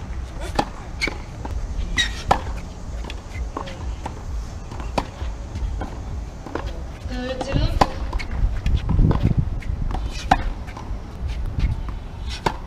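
Tennis balls struck by rackets: sharp pops at irregular intervals, some close and some from other players further off, over a steady low rumble, with a brief voice in the background.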